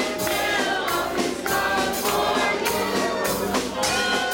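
A church praise team and congregation singing a gospel worship song, with instruments and a steady beat.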